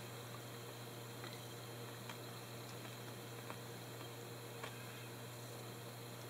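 Faint, irregular ticks, about one a second, of a felting needle being jabbed into a wool felt figure, over a steady hiss and a low hum.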